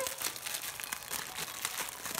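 Clear plastic cellophane wrapper crinkling with dense, irregular crackles as hands pull it open from around a pair of spiral notebooks.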